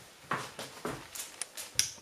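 Handling noise from a handheld camera being carried: a few soft knocks and rustles.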